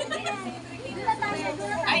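Several people talking at once, a murmur of overlapping voices with no single clear speaker.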